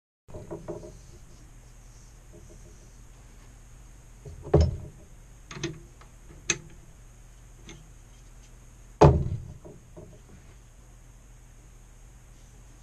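Metal chuck key knocking and clicking in a lathe chuck as the jaws are loosened to release a small turned pine piece. There are a few sharp knocks, the loudest about four and a half and nine seconds in, over a low steady hum.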